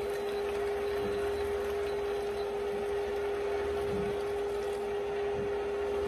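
Corn-cob broth running steadily from the spigot of an electric canner through a mesh strainer into a container, over a steady hum.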